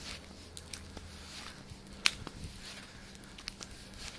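Footsteps on an asphalt road with scattered small clicks and rustles of walking while filming, one sharper click about two seconds in, over a faint steady low hum.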